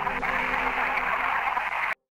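A steady, radio-like static hiss with faint steady low tones underneath, cutting off suddenly just before the end.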